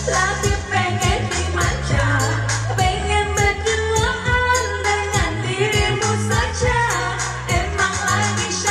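Several women singing together into handheld microphones over amplified Asian pop backing music with a steady beat and bass line.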